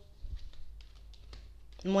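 Cards being picked up and handled on a wooden tabletop: a few faint, scattered clicks and taps of card against card and wood.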